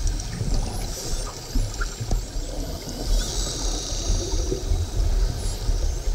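Underwater sound of a sardine-run feeding frenzy: an uneven rushing, bubbling wash of water stirred by diving Cape gannets and dolphins, with a low rumble and a few faint high-pitched whistles.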